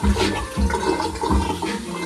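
Water running steadily, with a few dull low thumps.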